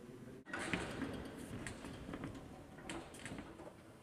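Rustling with scattered light knocks and clicks, as of bags, cloth bundles and objects being handled on a stage. It starts after a brief drop-out about half a second in.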